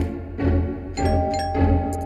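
Cartoon doorbell chime rung several times in quick succession, over background music.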